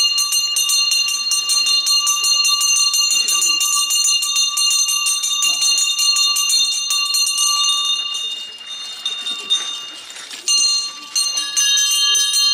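Metal ritual hand bell rung rapidly and without pause, a dense ringing clang with a bright steady ring. It weakens and partly breaks off from about eight to eleven seconds in, then resumes, with crowd voices beneath.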